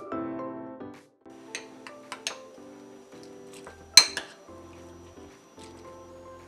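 Background music with sustained notes, fading after the first second. Over it a metal spoon clinks against a ceramic bowl a few times, the sharpest clink about four seconds in.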